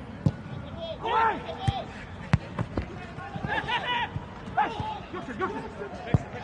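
Football kicked several times, sharp single thuds a second or so apart, the first just after the free kick is struck, between short shouted calls from players, with no crowd noise.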